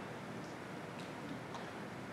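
Quiet room tone: a low, even hiss with a few faint ticks about half a second apart.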